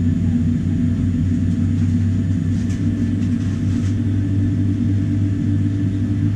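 Steady low rumble inside the cabin of a Boeing 787-9 on the ground, with a thin steady hum above it.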